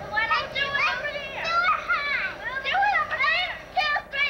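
Young children's high-pitched voices shouting and calling out in play, a quick run of rising and falling cries without clear words, dropping off briefly near the end.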